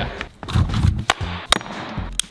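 A few sharp clicks or knocks, one about a second in and another half a second later, over a faint low rumble.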